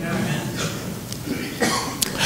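A person coughing, with a short noisy burst near the end.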